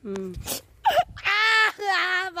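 A boy wailing loudly in a long, high-pitched, drawn-out cry that starts just over a second in.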